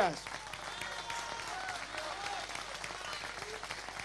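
Audience applauding steadily after a punchline in a political speech, with faint voices from the crowd mixed in.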